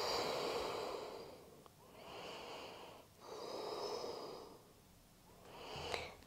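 A woman breathing slowly and audibly during a held yoga pose. There are about four long, soft breaths in and out, each one to two seconds long, with short pauses between them.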